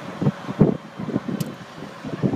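Wind buffeting the microphone in uneven gusts over the steady running noise of a moving car.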